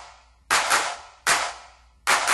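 Two sharp percussion hits in a song, about 0.8 s apart, each ringing out and fading between them, in a stop-time break of the music.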